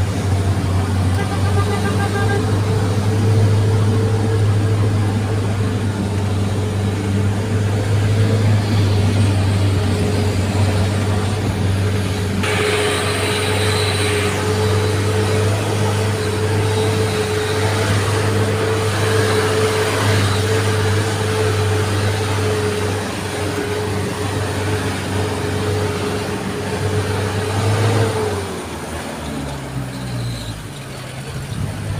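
A vehicle's engine runs steadily under way with a constant low hum, heard from on board. A short hiss comes about halfway through. Near the end the engine note falls as the vehicle slows.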